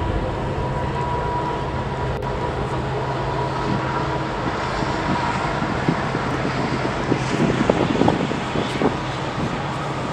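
A long train running by in the background, a steady rumble with a few light crackles in the second half.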